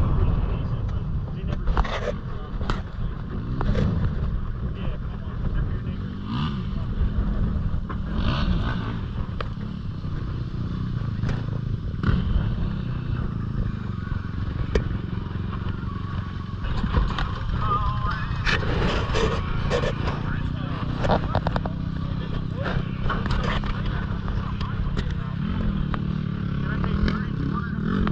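A vehicle engine idling with a steady low rumble, with indistinct voices and scattered clicks and knocks over it.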